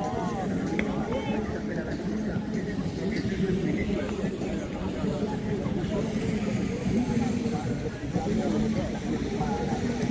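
Crowd chatter: many people talking at once, no single voice standing out, over a steady low hum.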